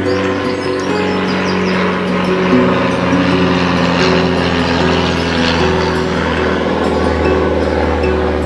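Ashbury four-string acoustic tenor guitar strummed steadily in an instrumental, chords ringing and changing every second or so, over a steady low hum.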